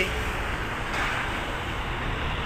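Steady, even hum of city street traffic, with no single vehicle standing out.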